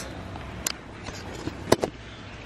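Handling noise from a handheld camera being turned around: a few short sharp clicks and knocks, one just after the start and two close together near the end, over low steady background noise.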